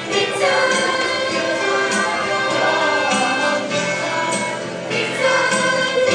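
A song sung by a group of voices together over an instrumental accompaniment.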